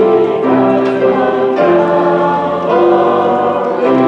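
Congregation singing a hymn together, many voices holding long notes that change pitch every second or so.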